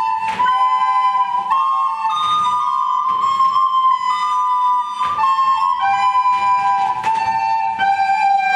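Children's recorder ensemble playing a tune in harmony, two or more parts moving together in held notes that change every half second to a second.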